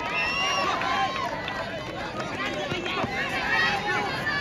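A crowd of spectators and players shouting and calling out over one another at a kho-kho match, with several high-pitched shouts rising and falling.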